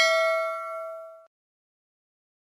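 Notification-bell chime sound effect from a subscribe animation, ringing and fading away before cutting off about a second and a quarter in.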